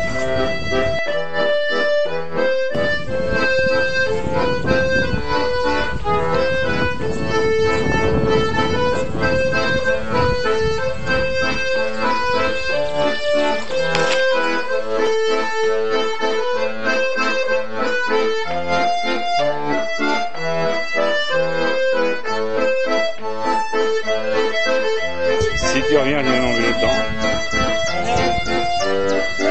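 Accordion music: a steady, sustained tune played throughout.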